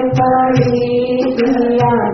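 Devotional chanting set to music: long held notes over a steady drone, with occasional drum strokes.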